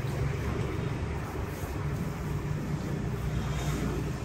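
Steady low background hum, with no distinct events.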